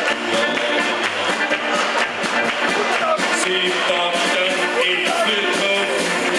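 Live brass band of trumpets, baritone horn and tuba, playing a tune over a steady beat from bass drum and drum kit.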